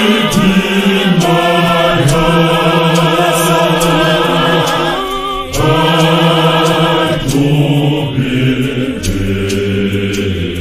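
A church choir singing a gospel hymn in long held notes, with a short breath between phrases about five and a half seconds in.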